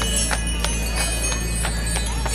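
Harness bells jingling on a walking carriage horse, shaken with each step, along with hooves clopping on the pavement about three times a second.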